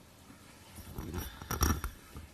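A short cluster of knocks and rustles close to a microphone, starting about a second in: handling noise at a podium.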